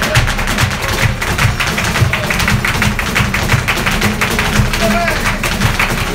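Live flamenco: fast heel-and-toe footwork (zapateado) and hand-clapping (palmas) in a dense run of rapid clicks over two flamenco guitars strumming, with a brief shout from the performers about five seconds in.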